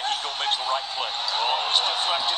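Televised college basketball game audio heard through a phone's speaker: a steady arena crowd noise with a basketball being dribbled on the hardwood court.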